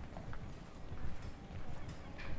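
Footsteps on a stone-paved pedestrian street, irregular low thuds with faint clicks, with faint voices of passers-by.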